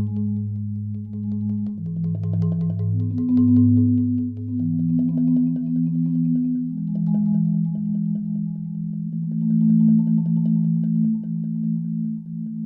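Marimba played with mallets in slow, mellow rolled chords: rapid repeated strokes sustain each chord. The low bass notes drop out about five seconds in, and the chords continue higher up, changing every few seconds.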